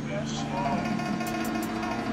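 Several music tracks playing over one another: a dense bed of steady drone tones with short clicks and a voice mixed in.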